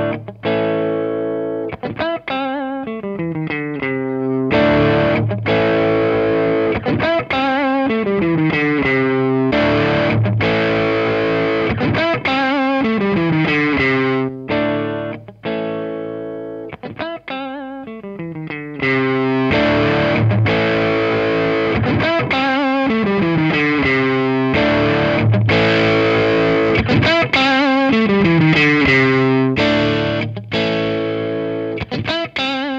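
Electric guitar (a Stratocaster in the position-4 pickup setting) playing a looped riff through a Behringer OD300 Overdrive Distortion pedal into a Fender Hot Rod Deluxe III tube amp, with an overdriven, distorted tone. The same phrase repeats several times.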